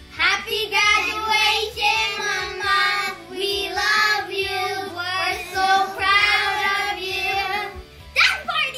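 A group of young children singing together, a sung melody in short phrases with brief breaks between them.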